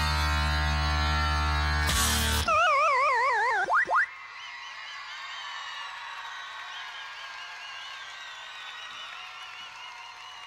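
Loud rock backing music holds a final chord, then about two and a half seconds in gives way to an electronic arcade-game 'game over' sound effect: a warbling tone sliding downward, ending in two quick rising blips. After it, fainter audience cheering and whistling.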